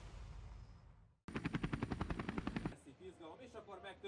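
A fading swish, a brief gap, then about a second and a half of rapid, even helicopter rotor chop, about a dozen pulses a second. A man starts speaking near the end.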